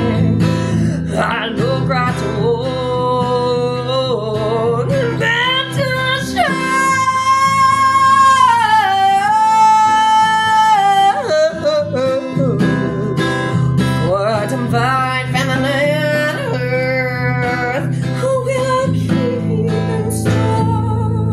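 A woman singing while strumming an acoustic guitar. Near the middle she holds one long note that steps down partway through.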